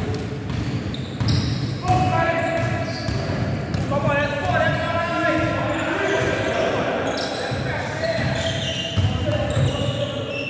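Basketball bouncing on a hardwood gym floor during play, mixed with players' voices and calls, all echoing in a large indoor hall.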